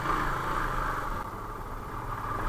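Motorcycle engine running steadily as the bike rides slowly along a rough, muddy dirt track, a low, even drone.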